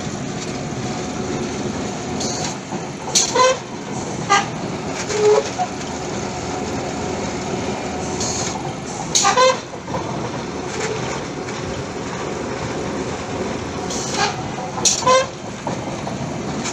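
Steady machinery noise from a pile-boring rig, with short sharp squeals that come singly or in pairs at irregular intervals of a few seconds.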